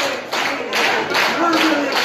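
Small crowd clapping in a steady rhythm, about three claps a second, with voices calling out over it.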